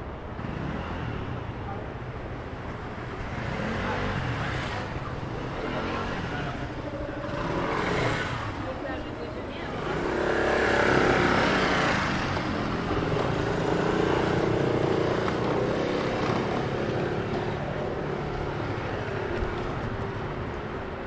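City street traffic: cars and motor scooters passing one after another, the loudest pass about ten seconds in, with passers-by talking indistinctly.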